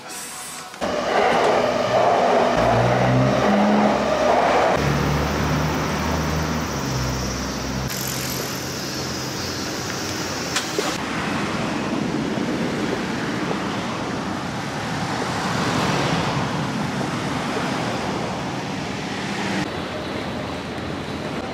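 City street traffic: motor vehicles passing close by, loudest in the first few seconds, then a steady traffic background.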